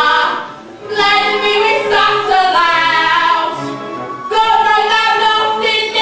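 Live musical-theatre singing: several voices singing together, with a short lull about half a second in.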